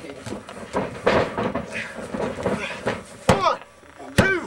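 Voices around the ring, then a single sharp slap near the end: the referee's hand striking the ring mat, the start of a pin count.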